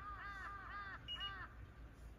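A bird calling: a rapid run of short, arched notes, about five a second, that stops about one and a half seconds in.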